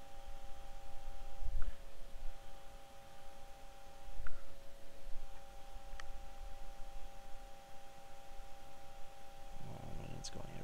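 A steady two-note electrical hum runs under a few small ticks of metal tweezers on a tiny surface-mount resistor and circuit board, with two low handling bumps on the bench, about 1.5 and 4 seconds in.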